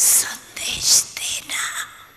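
A woman speaking softly into a microphone, breathy and whispery, in four short bursts with strong hissing sibilants.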